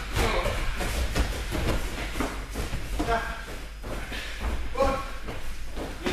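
Voices calling out in a large, echoing gym hall, mixed with bare feet shuffling and thudding on judo mats. A couple of coughs come right at the start.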